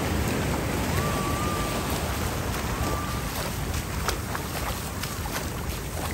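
Surf washing up the beach: a steady rush of breaking waves and fizzing foam, with wind on the microphone. A few short faint clicks come in the second half.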